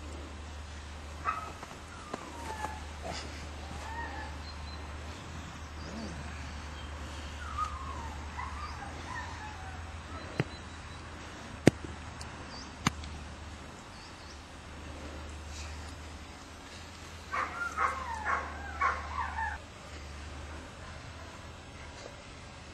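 German Shepherd puppy vocalizing during a tug game: short high yips and whines scattered through, then a quick run of about six harsh yelps in the last few seconds. A few sharp clicks come near the middle.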